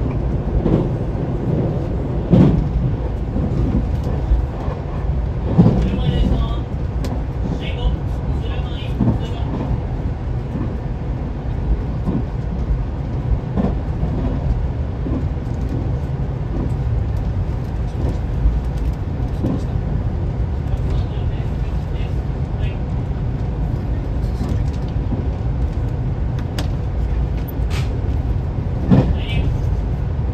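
Cabin running noise of a 383-series electric express train under way: a steady low rumble from wheels on rail, with a few sharper knocks.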